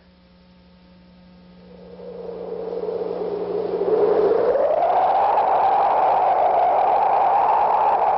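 A rushing, whooshing noise over a faint steady hum. It swells from quiet to loud over about four seconds, its pitch dipping slightly and then rising about four seconds in and holding there.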